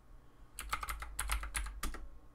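Typing a password on a computer keyboard: a quick run of about eight keystroke clicks starting about half a second in.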